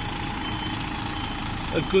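Diesel engine of a DAF lorry tractor unit running steadily at low revs while the articulated truck reverses slowly.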